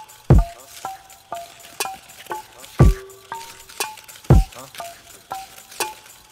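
A homemade hip-hop beat looping on studio playback. A deep kick drum with a falling pitch hits three times, and sharp clicky found-sound percussion ticks about twice a second. Short pitched keyboard notes fall between the hits.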